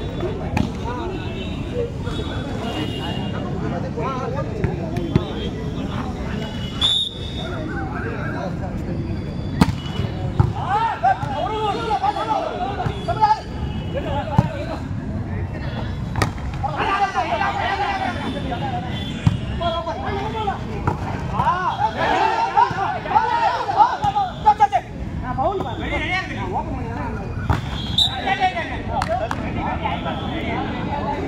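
Spectators and players talking and shouting, with several sharp slaps of a volleyball being struck during a rally.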